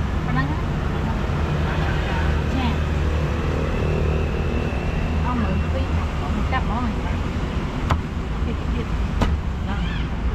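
Street traffic: a steady low rumble of passing engines, with indistinct voices in the background and two sharp knocks near the end.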